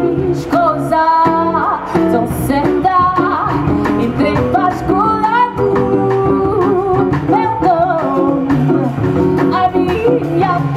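Live jazz band playing: a woman singing into a microphone over upright double bass and guitar.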